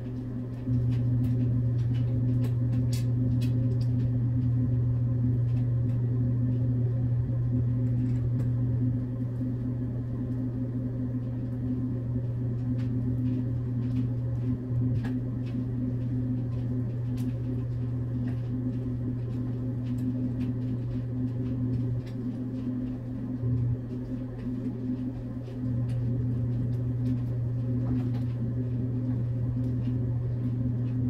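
A steady low hum, stepping quieter and louder a few times, over faint scattered clicks of screws being driven by hand into the base of a flat-pack TV stand.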